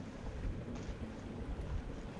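Faint, steady noise without voices, an even hiss-like hush that may be background ambience.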